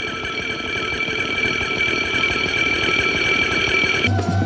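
A steady, high, rapidly fluttering ringing buzz, alarm-like, over a low rumble; it cuts off suddenly at the end.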